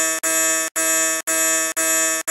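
A 'wrong answer' buzzer sound effect, a pitched buzz repeated in half-second blasts about twice a second, marking a rejection.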